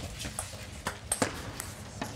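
A table tennis ball being struck back and forth between rackets and bouncing on the table in a fast rally: a handful of sharp, irregularly spaced clicks over the first second or so, with the last clicks coming just after a second in as the point ends.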